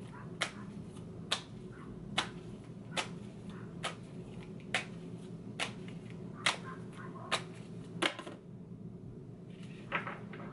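A deck of oracle cards being shuffled by hand, a sharp snap of cards roughly once a second, about ten in all, stopping about eight seconds in, over a steady low hum.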